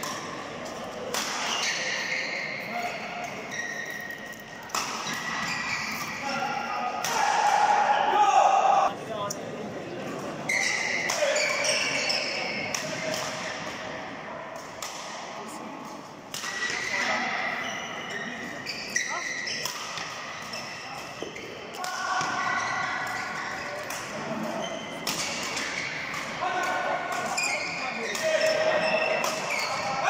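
Badminton rally in a large hall: repeated sharp racket strikes on the shuttlecock, players' shoes squeaking and stamping on the court mat, and voices, all echoing.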